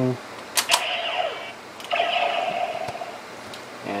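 DX Kamen Rider Decadriver toy belt: two sharp plastic clicks as the side handles are pushed in, then the belt's electronic sound effect plays from its small speaker as steady tones in two stretches.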